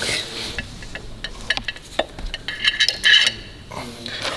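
Metal brake parts being handled and set down on a steel platform scale: a series of short metallic clicks and knocks, then a brief clinking clatter about three seconds in as the slotted brake disc goes onto the scale with the caliper.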